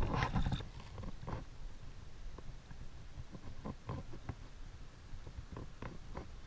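A small hooked fish splashing at the water's surface for about the first half-second, then faint scattered clicks and taps over a low wind rumble.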